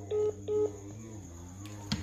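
Two short electronic beeps about half a second apart, like keypad button tones, over a steady low hum.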